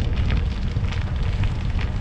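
Wind buffeting the microphone of a camera moving along with a cyclist: a steady low rumble.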